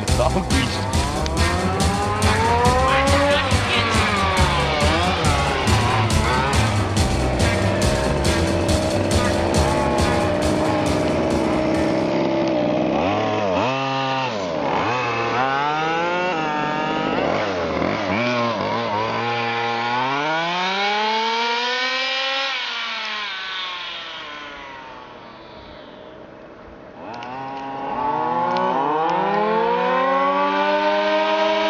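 Background music with a steady beat for about the first twelve seconds. Then the Zenoah two-stroke engines of 1:5-scale FG RC cars rev up and down as the cars drive past. The sound fades away about twenty-four seconds in and comes back with rising revs near the end.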